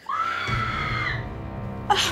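A high-pitched scream breaks in suddenly and is held for about a second before fading, over a low, sustained horror-score drone.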